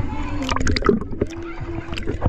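Pool water sloshing and splashing right at the camera, which sits at the water's surface, with a quick cluster of splashes about half a second in.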